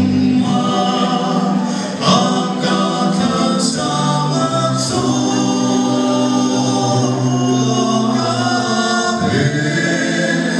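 Male vocal quartet singing a gospel song in harmony, holding long chords that change every few seconds.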